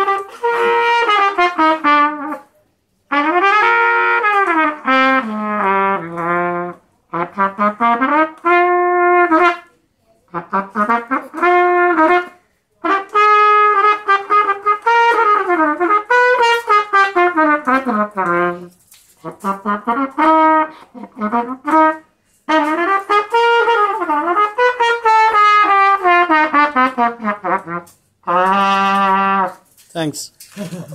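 Unaccompanied trumpet playing a melody from sheet music, in phrases of two to five seconds with short breaks for breath between them. The last phrase ends on a low held note just before the end.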